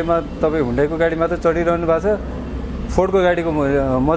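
Speech only: a man talking in a low voice, with no other sound standing out.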